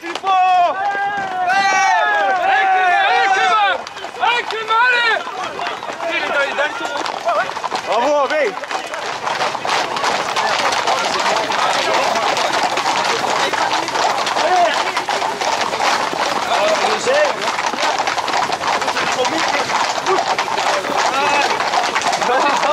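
Loud shouting from people on foot for the first few seconds. From about nine seconds in, it gives way to a dense, continuous clatter of many Camargue horses' hooves on the asphalt road, mixed with running footsteps and crowd noise.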